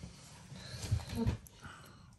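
Mostly a quiet room, with a few faint low thuds about a second in as a bearded dragon snaps up a live silkworm from a tabletop.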